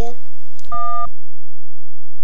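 A short electronic beep, under half a second long, about a second in: a buzzy chord of several steady tones that cuts off abruptly.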